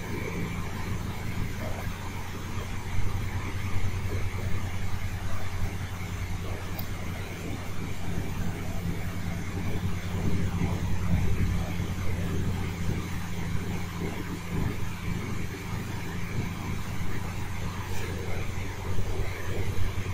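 Steady low hum over an even hiss: background room noise picked up by a microphone, with no one speaking.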